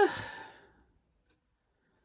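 A hesitant, drawn-out "I" trailing off into a breathy sigh that fades out within the first second, then near silence.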